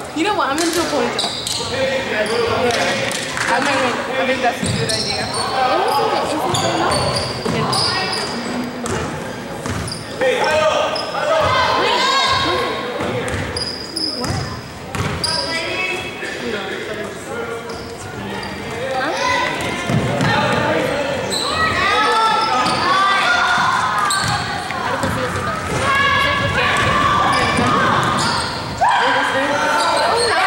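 Basketball being dribbled and bouncing on a gymnasium's hardwood court during live play, with voices of players, coaches and spectators calling out, echoing in the hall.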